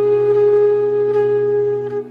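Bansuri bamboo flute holding one long, steady note over a low sustained drone; the note breaks off at the end.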